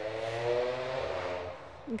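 A very loud motorcycle going past, its steady engine note fading out about one and a half seconds in.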